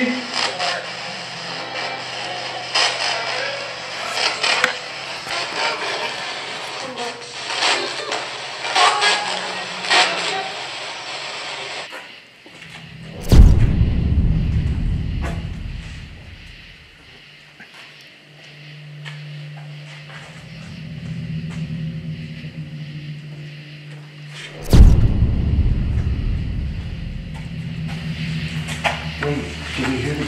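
A hiss full of crackles and clicks for the first twelve seconds, then two deep cinematic booms about 13 and 25 seconds in, each fading slowly, with a low droning music bed between them.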